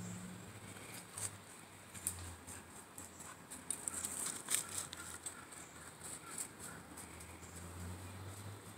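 Footsteps crunching and rustling in dry leaf litter: a run of irregular crackles, heaviest about four seconds in.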